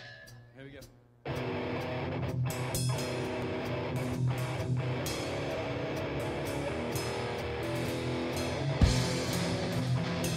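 A punk rock band (electric guitar, bass and drums) comes in all at once about a second in and plays the opening of a song, with distorted guitar chords over bass and cymbal-heavy drums. A short spoken 'there we go' comes just before.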